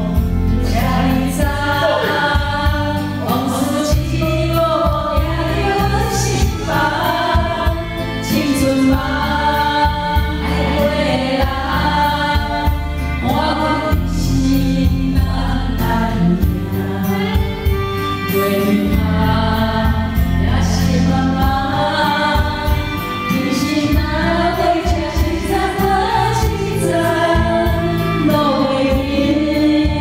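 Karaoke backing track with a steady beat, with a group of women singing along together, one of them through a microphone.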